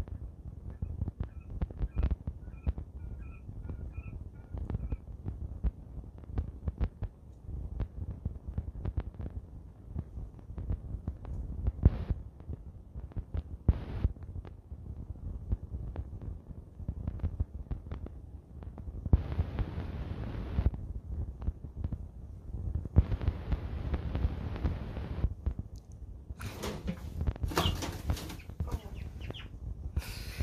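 Quail wings flapping and wood-shaving bedding thrashing in several hissy bursts in the second half as the green anaconda seizes and coils around the bird. The last and loudest burst comes near the end. Low rumble and thumps from handling the phone run underneath.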